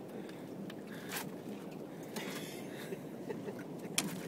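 Steady background noise aboard a small open fishing boat on the water, with a few faint knocks and a sharp click at the very end.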